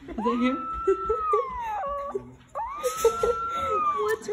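Young puppy whining in two long, high drawn-out cries, each rising, held, then falling away, protesting at being held and kissed.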